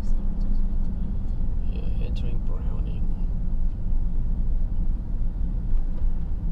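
Steady low rumble of a car driving on a paved road, heard from inside the cabin: engine and tyre noise.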